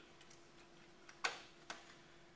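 The plastic lid of an AED (automated external defibrillator) snapping shut: a sharp click, then a lighter second click about half a second later. Closing the lid switches the unit off.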